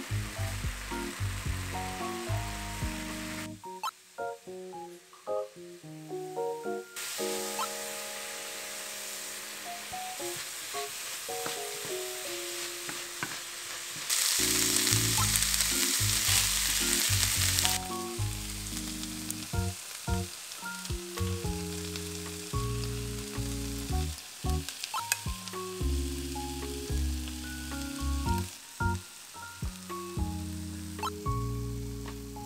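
Ground beef and diced onion sizzling in a frying pan as they are stirred with a wooden spoon, under background music. The sizzle swells loudest for a few seconds just past the middle.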